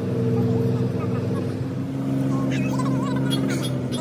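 An engine running steadily at a constant pitch, its tone shifting slightly about halfway, with faint voices in the background.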